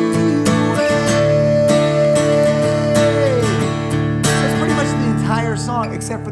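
Gibson acoustic guitar strummed in ringing chords, with a voice holding one long sung note over the strumming for a couple of seconds that slides down as it ends.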